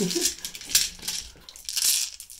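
Handful of plastic six-sided dice being swept together by hand on a gaming mat and scooped up, clicking and clattering against each other in irregular bursts.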